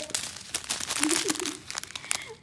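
Small plastic zip bags of square diamond-painting drills crinkling and rustling as they are handled, with a short bit of voice about a second in.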